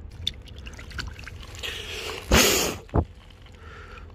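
Shallow river water splashing in one short burst a little past the middle, followed by a single short knock.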